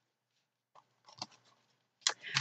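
Near silence: room tone, with one faint, brief tick a little after the middle.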